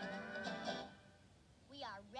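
Soft guitar soundtrack music from an animated film, heard through laptop speakers, fading out about a second in. Near the end comes a short wordless vocal call that slides down and back up in pitch.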